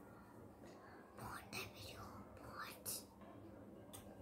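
Faint whispering, a few short breathy sounds between about one and three seconds in, over quiet room tone.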